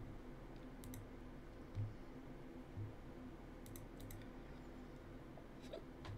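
Faint clicking at a computer desk: a quick cluster of light clicks about four seconds in and a couple more near the end, over a low steady electrical hum. Two soft low thumps come a second apart near the start.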